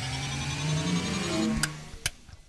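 Short electronic logo sting: sustained synth tones with slowly rising pitches, swelling and then fading, with a sharp click about one and a half seconds in.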